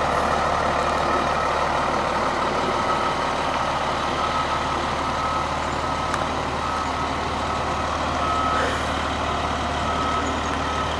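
Fire engine's diesel engine running with a steady low rumble. Short, high reversing beeps sound every second or two from about three seconds in.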